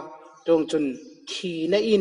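Speech only: a man preaching a sermon in a steady speaking voice.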